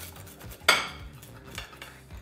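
Metal pizza cutter wheel rolling through a pizza on a ceramic plate, scraping and clicking against the plate, with one sharp clink of metal on the plate about two-thirds of a second in.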